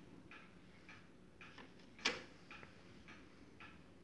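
Faint mechanical ticking from a Marantz CD65 II CD player's mechanism, short clicks repeating a little under twice a second, with one louder click about two seconds in.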